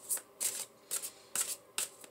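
Tarot cards being shuffled by hand, in several short, separate swishes of the deck.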